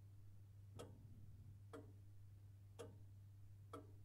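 Faint clock ticking, four ticks about a second apart, over a low steady hum.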